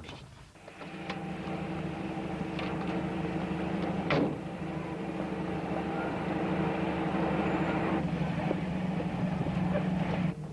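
Car engine running steadily, with a sharp knock about four seconds in.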